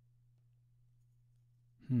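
A man's thoughtful "hmm" near the end, a short hum of hesitation while he weighs an answer. Before it there is near silence with only a faint steady low hum.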